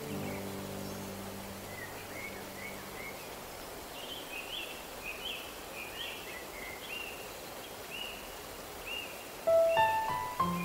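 Steady rush of falling water with a bird calling repeatedly in short chirps. A soft sustained music chord fades away in the first couple of seconds, and new music comes in louder just before the end.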